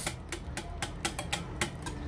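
Wire whisk beating a thick strawberry and labneh mixture in a glass bowl, its wires clicking quickly and unevenly against the bowl, about five or six clicks a second.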